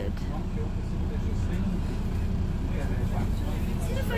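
Steady low rumble of a city bus's engine heard from inside the passenger cabin.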